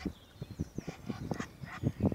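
Mute swan feeding with its bill at the water's surface: a quick, irregular run of short dabbling sounds.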